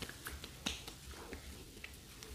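A few faint, sharp clicks and light taps scattered over two seconds, from hands patting and touching the face and skin.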